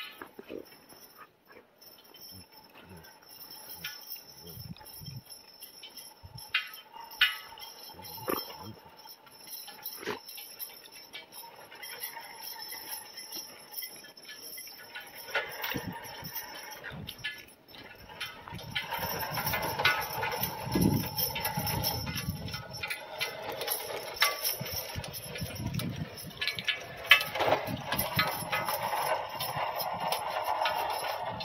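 Draft horse pulling a steel sled over packed snow: hoofbeats and the sled's runners and harness, faint and scattered at first, then louder and busier from about two-thirds of the way in as the team draws close.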